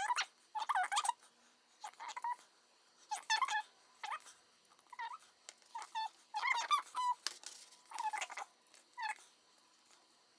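Short pitched animal calls, about a dozen, each brief and bending in pitch, coming at irregular intervals.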